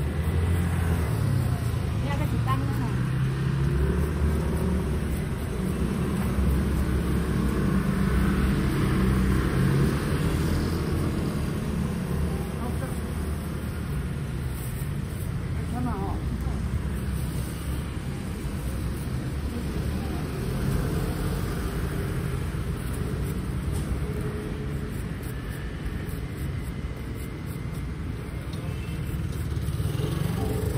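Street traffic: the engines of passing cars and motor scooters running in a steady low rumble, with people talking nearby, louder in the first ten seconds or so.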